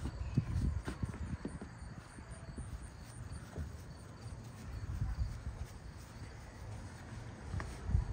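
A small child's footsteps on wooden deck steps: a run of hollow thuds in the first second or two, then fainter steps, with a sharp knock near the end.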